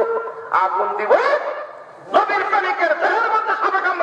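A man's voice chanting a sermon in a drawn-out, melodic tune through a microphone and public-address system, with a short pause about two seconds in.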